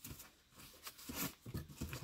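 Faint paper and cardboard handling: a few soft rustles and light taps, quieter than the talk around them.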